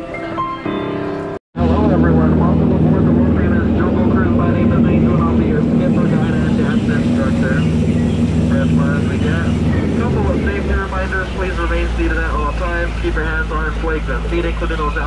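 An upright piano plays for about a second and a half and breaks off abruptly. Then a Jungle Cruise boat is under way: a steady low motor hum with water churning around the boat, and indistinct voices over it. The hum's deepest part grows stronger near the end.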